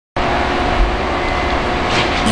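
Heavy construction-site machinery running steadily: a continuous engine drone with a strong low rumble and a few held tones over it.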